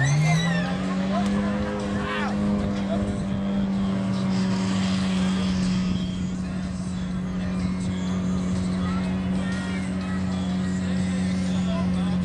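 Small pickup truck's engine revving up hard in the first second, then held at steady high revs as the truck drives down into a mud pit.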